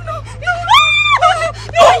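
A woman's high-pitched wail, held for about half a second in the middle, rising at the start and falling away at the end, followed by a burst of laughter near the end: an overwhelmed cry of disbelief.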